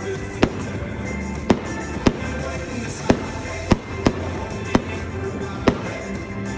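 Aerial fireworks shells bursting: about eight sharp bangs at uneven intervals, over music playing throughout.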